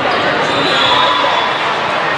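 Gym noise during an indoor volleyball match: a steady wash of voices from players and spectators, with ball play and a brief high squeak about half a second in.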